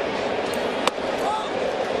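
A baseball pitch popping into the catcher's mitt: one sharp crack a little under a second in, over steady ballpark crowd noise.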